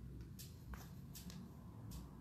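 Faint hand-sewing sounds on felt: several brief soft rustles and clicks as the needle and thread are worked through the felt petals.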